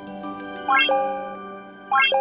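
Sound effect for an animated subscribe button: a quick rising run of chime notes ending in a held, bell-like ding, about two-thirds of a second in, with a second identical run starting at the very end, over quieter held notes.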